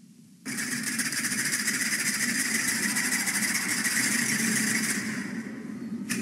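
Audience applauding, starting suddenly about half a second in and tapering off near the end.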